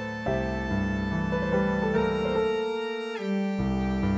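Chamber music for piano and string trio: violin, viola and cello play a melody together in octaves over a piano accompaniment of running eighth notes. The bass thins out briefly near three seconds.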